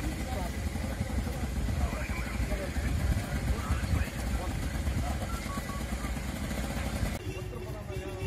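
A small vehicle engine idling with a fast low putter while people talk over it. Near the end the engine sound drops away abruptly and mostly voices remain.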